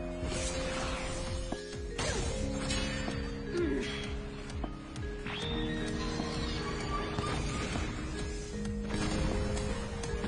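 Fight-scene soundtrack from an anime episode: dramatic background music of held notes, with several whooshing and crashing sound effects laid over it.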